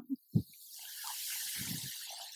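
A man's long hissing breath through the teeth or lips, rising and fading over about a second and a half, just after a short sound from his voice.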